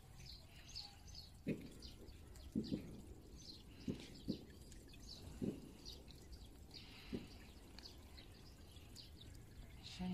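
Scissors snipping through a dog's long, matted coat: about seven short snips at irregular intervals, with faint bird chirps in the background.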